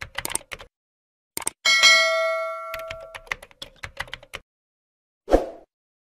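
Subscribe-animation sound effects: runs of quick mouse-like clicks, then a bright notification-bell ding about a second and a half in that rings for about a second and a half, more clicks, and a short thump near the end.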